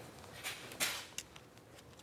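A playing card being torn by hand: two short, faint paper rips about half a second apart, the second one stronger, followed by a small click.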